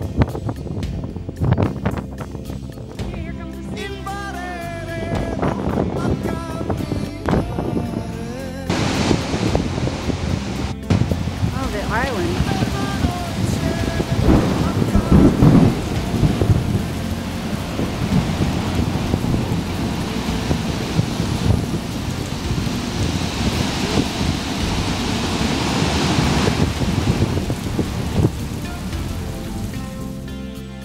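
Storm noise: a steady rushing roar with deep rumbles, starting about nine seconds in and growing louder for a moment in the middle.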